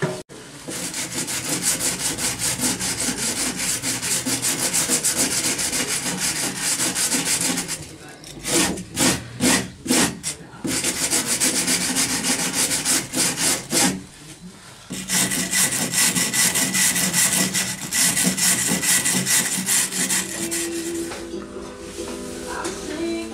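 A hand brush scrubbing along a rough-sawn wooden roof beam in rapid back-and-forth strokes. There are short pauses about eight and fourteen seconds in, with a few slower, heavier strokes between them.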